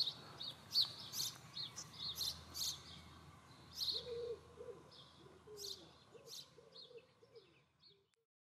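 Birds chirping outdoors: many short, high chirps, joined about halfway through by a run of lower calls, all fading out near the end.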